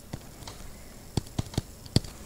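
Stylus tapping on a tablet screen while writing by hand: a few sharp, separate taps, one near the start, three in quick succession a little past the middle and one at the end.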